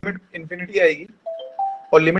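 A short two-note electronic chime, the second note higher than the first, after a few words of speech. It sounds like a notification tone.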